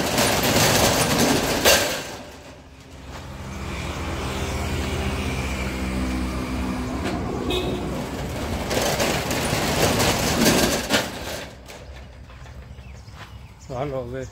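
Metal rolling shutter being hauled down, a loud rattling clatter in the first two seconds and again about nine to eleven seconds in. In between there is a steady pitched drone lasting several seconds.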